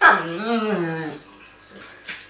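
Akita giving one long, wavering whining moan that starts sharply and fades after about a second, while wrestling with a miniature schnauzer.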